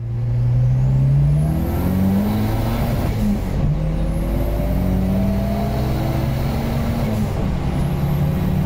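Tuned turbocharged Volvo 940 accelerating hard, heard from inside the cabin. The engine note climbs steadily, drops back at a gear change about three and a half seconds in and again near the end, then climbs again, with a faint high whine rising alongside it.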